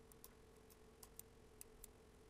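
Near silence: faint room hum with a few brief, faint computer mouse clicks.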